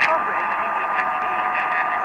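All India Radio's 1566 kHz mediumwave broadcast from Nagpur, received weak over more than 6000 km: a spoken news bulletin, thin and muffled, buried in hiss with a few static crackles. A steady whistle runs under the voice.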